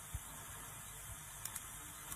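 Faint, steady background hiss with a low hum, a pause in a live broadcast feed.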